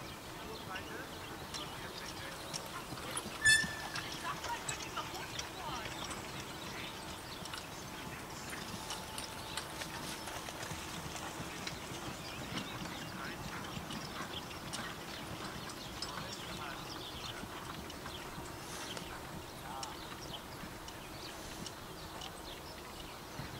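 Hoofbeats of a single horse trotting on turf while pulling a carriage, a run of soft ticks. About three and a half seconds in, a brief, loud high-pitched sound stands out above them.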